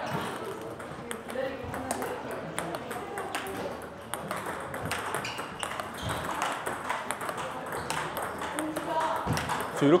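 Table tennis balls in a quick multiball drill: a steady run of light, sharp clicks as fed balls bounce on the table and come off the paddle rubber in backhand topspin drives against long backspin balls.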